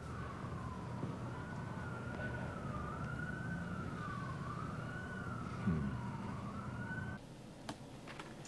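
An emergency-vehicle siren wails, its pitch rising and falling about once a second, over a low traffic rumble. It cuts off abruptly about seven seconds in.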